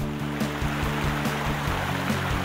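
Rushing, churning water over a music bed of steady, held low notes.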